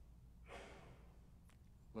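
A man's audible breath, one soft exhalation or sigh about half a second in, faint over near silence, followed by a tiny click.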